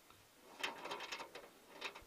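Faint, quick run of small clicks and rattles from fishing gear being handled, starting about half a second in, with one more short rattle near the end.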